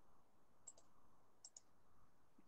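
Near silence with faint computer mouse clicks: two quick double clicks, the first under a second in and the second about halfway through.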